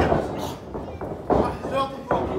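Two heavy thuds of boot stomps landing in a wrestling ring, one right at the start and another about a second and a half later, with shouts from the crowd.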